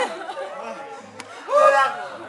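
A group of men's voices at close range, low chatter and then one loud, short, pitched vocal cry near the end. This fits the screech made in the pterodactyl party game, voiced with lips drawn over the teeth.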